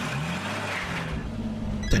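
A steady rushing noise with a low hum under it, a sound effect from the cartoon's soundtrack. It starts abruptly and lasts about two seconds.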